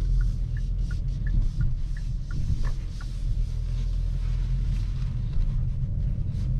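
Cabin sound of a Hyundai Kona N's 2.0-litre turbo four-cylinder at low speed, a steady low rumble of engine and road. Over it the turn-signal indicator ticks about three times a second and stops about three seconds in.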